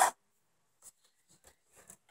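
Faint scattered clicks and rubbing as a plastic Nerf blaster is handled and pushed against an empty aluminium can.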